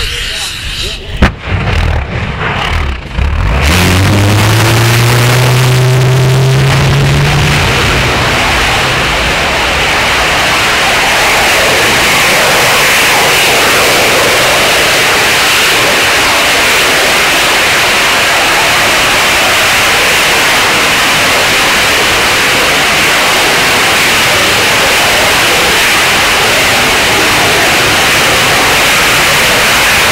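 Copenhagen Suborbitals TM65 liquid-fuel rocket engine, burning ethanol and liquid oxygen, igniting on a static test stand. A sharp crack about a second in, then a rising tone as the engine comes up to thrust. From about four seconds in it settles into a loud, steady roar at full burn.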